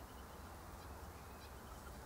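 Faint outdoor background: a steady low rumble with a few faint, quick bird chirps.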